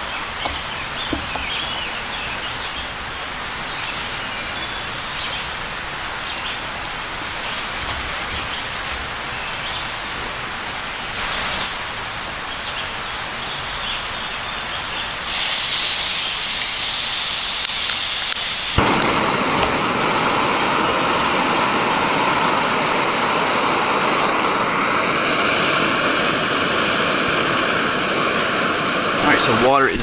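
Steady outdoor rush of running water, then, about halfway through, a canister backpacking stove's gas burner starts hissing suddenly and goes on steadily, growing fuller a few seconds later as a pot of water heats toward the boil on it.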